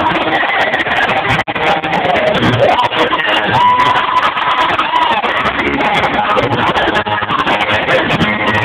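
Loud music with a singing voice over a club sound system, picked up by a phone microphone with a muffled, narrow sound. The singer holds one long note near the middle, and the audio drops out briefly about a second and a half in.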